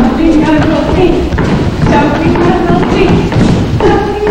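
Voices singing in held notes, with repeated thumps on the stage floor from small children's feet stamping and dancing.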